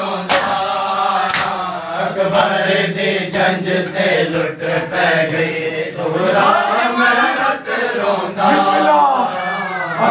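Men chanting a nauha, a Shia mourning lament, with sharp slaps of open hands striking bare chests in matam cutting through the chant at irregular intervals.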